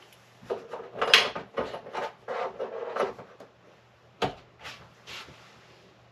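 Knocks, scrapes and clatter of a small aluminum angle bracket being handled and set into place against a wooden drawer assembly inside a cabinet. A busy run of them fills the first half, then comes a single sharp click about four seconds in and two softer knocks.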